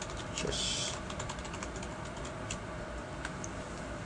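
Typing on a computer keyboard: a quick run of key clicks in the first second or so, with a short hiss about half a second in, then a few scattered clicks.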